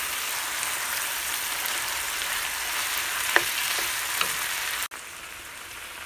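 Ground turkey and onions sizzling in a nonstick frying pan as a wooden spoon spreads the meat, with a single sharp tap a little past three seconds in. About five seconds in the sizzle drops abruptly to a quieter level.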